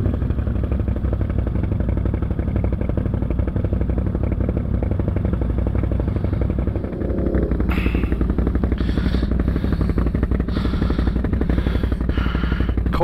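ATV engine idling steadily with an even low firing rhythm.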